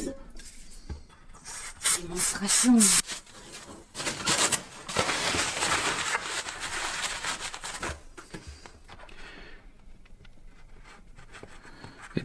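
Cloth rubbing over a small sealed cartridge bearing as it is wiped clean, an even rubbing noise lasting about four seconds in the middle, with a few sharp handling clicks before it.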